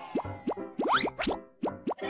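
A quick run of cartoon 'plop' sound effects, each a short rising bloop, about nine in under two seconds, as the letters of an animated logo pop in over light jingle music.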